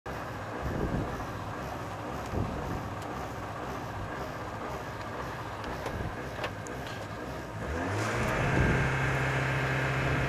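Rally car engine idling, heard from inside the cabin. About eight seconds in, the revs rise and are held steady: the car is being brought up to revs on the start line.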